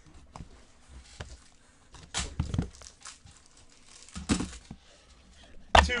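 Rustling and crinkling of trading-card boxes and packaging handled by gloved hands, with two louder bursts of rustling about two seconds and four seconds in.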